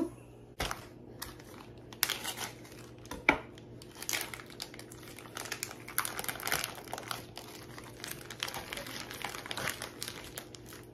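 Clear plastic packaging of a ham steak crinkling and tearing as it is opened by hand and the ham is pulled out, in short irregular crackles. A sharp knock comes about half a second in and another strong crackle about three seconds in.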